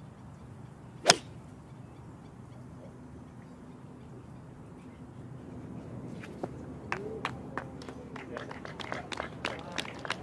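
A golf club striking the ball on a tee shot: one sharp crack about a second in. Scattered claps and crowd voices build over the last few seconds as the ball finishes near the hole.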